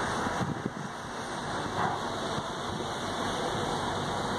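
Steady rushing noise of wind and water alongside a moving ship.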